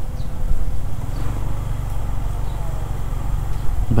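Motorcycle engine running at low speed as the bike rolls along, a steady low hum that firms up from about a second in, over a haze of wind and road noise.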